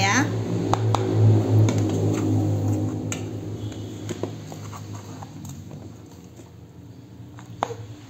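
Green plastic scoop scraping and scooping crumbly steamed rice-flour dough in an enamel basin, with a few light knocks of the scoop against the bowls. A steady low hum runs under it, fading over the first half.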